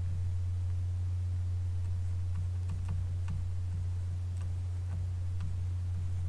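A steady low hum, with faint scattered ticks of a stylus tapping and writing on a tablet screen.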